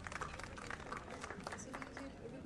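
Light applause from an audience: many scattered hand claps at an irregular pace.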